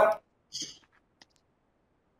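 The tail of a spoken word, then a short breathy hiss and two or three faint clicks, followed by near silence.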